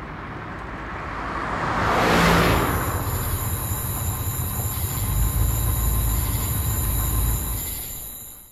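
A car going by, its sound swelling to a peak about two seconds in, then a low rumble with a thin, steady high-pitched ringing over it, fading away near the end.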